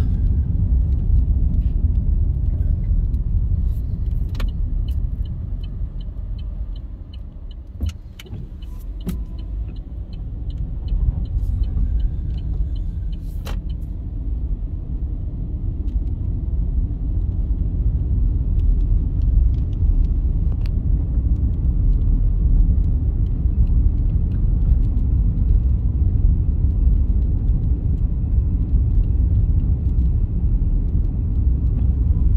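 Steady low rumble of a car's tyres and engine heard inside the cabin while driving on a wet, rough country road. The rumble dips about seven to nine seconds in, then builds again. From about three to thirteen seconds in, a faint, evenly spaced ticking runs under it, with a few sharp clicks.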